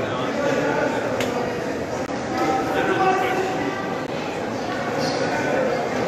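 Several people talking at once, their voices indistinct in a large hall, with one sharp click about a second in.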